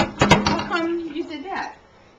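Three quick sharp metal clinks, like a cookpot lid being handled, followed by a person's voice speaking briefly.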